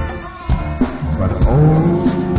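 Live go-go funk band playing, with a bass line and a steady percussion beat; the music dips briefly in level just after the start, then comes back up.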